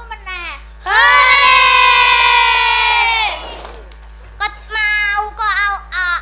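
Young girls' voices through stage microphones: short sung or chanted phrases, then about a second in one child's long, loud call held on a single pitch for about two seconds, followed by more short phrases.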